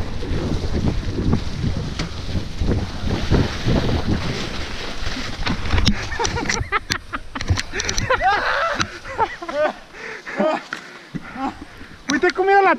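Mountain bike rolling fast over a gravel track, the tyres rumbling over stones and wind buffeting the microphone. About six seconds in the ride ends in a few sharp knocks and clatters as the riders come down in the snow, followed by voices calling out and a quieter stretch.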